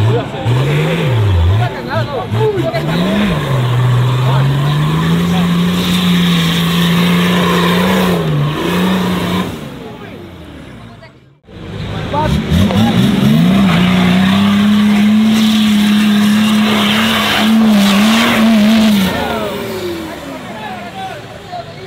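Nissan Patrol's diesel engine revved hard and held near full throttle while it claws up a muddy trench, its pitch swinging up and down at first and then holding high. The black smoke pouring out marks heavy load. The revving breaks off about ten seconds in and picks up again a second or so later for another long, held run.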